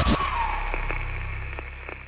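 Horror-film title sound design: a sharp hit, then a low rumbling drone with a tone sliding downward, fading steadily, with a few faint clicks.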